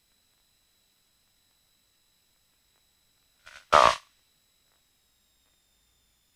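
Dead silence on a gated headset intercom feed, with no engine heard, broken about three and a half seconds in by one short vocal sound from one of the pilots, a brief grunt or one-syllable word.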